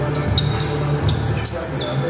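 A basketball being dribbled on an indoor court, with several short, high sneaker squeaks on the floor, over background music.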